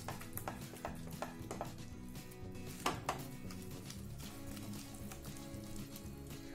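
Soft background music with a steady tune, over a wooden spatula scraping and tapping in a nonstick pan as curd is stirred into a thick spice paste. One sharper knock comes about three seconds in.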